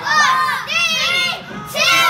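Children shouting the New Year countdown numbers along with the TV, one high-pitched shout about every second.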